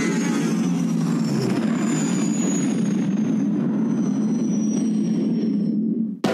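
A steady low engine-like rumble, used as a sound effect, with a faint high whine slowly falling in pitch; it cuts off abruptly at the end.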